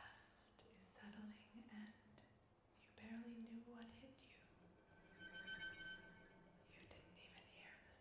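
A woman whispering softly and unintelligibly into a close microphone, with breathy hisses, mouth sounds and a few soft-voiced syllables, as the vocal part of a contemporary piece. A faint sustained tone sounds for about a second, a little past halfway.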